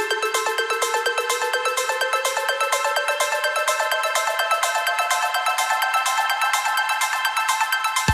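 Background electronic dance music in a build-up: a fast, steady percussive beat under one tone that rises slowly in pitch.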